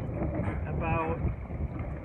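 Wind rumbling steadily on the microphone, with a short voiced sound from a person about a second in.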